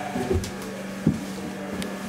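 Steady hum inside a small DEVE hydraulic elevator car, with a dull thump about a third of a second in and a sharp click about a second in.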